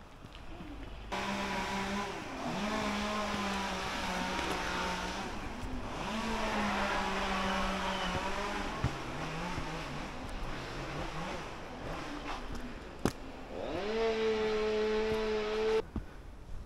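An engine running, its pitch holding steady for a few seconds at a time and dipping then rising again several times, with one sharp click shortly before the end; the sound starts and cuts off abruptly.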